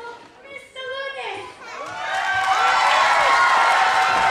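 A few spoken words, then from about two seconds in a gym full of schoolchildren breaks into loud cheering, many voices at once.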